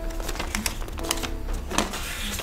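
A sheet of paper being unfolded and handled close to a clip-on microphone: an irregular run of crisp crinkles and rustles.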